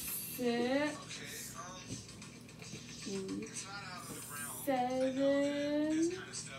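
A person's voice in short wordless phrases, ending in one long drawn-out note near the end.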